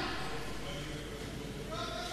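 Faint, wavering voices in a large reverberant hall, heard under a low hum, just after a loud outburst of speech and laughter has died away.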